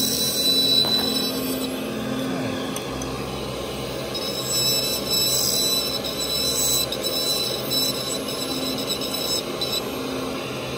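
Dental lab handpiece spinning a bur, a steady high whine with grinding as it cuts down the stone teeth of a dental model.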